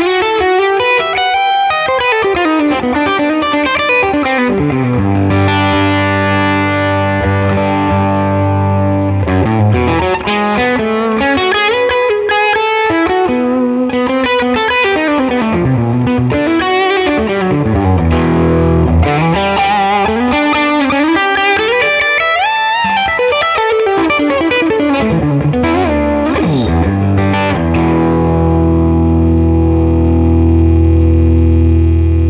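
Electric guitar played through the Neural DSP Tone King Imperial MkII amp model with its Overdrive 1 pedal engaged, controls all halfway up, giving a driven, vintage-voiced tone. Fluid single-note runs rising and falling, ending near the end on a held chord left ringing.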